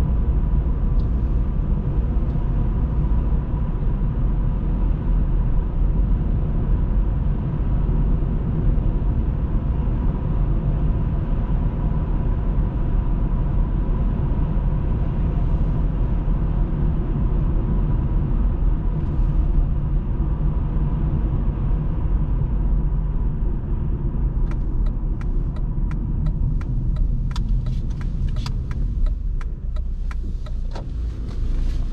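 Car driving on an open road: a steady low rumble of tyres and engine, with a faint steady whine. In the last few seconds, irregular sharp clicks come in as the car slows and turns off the road.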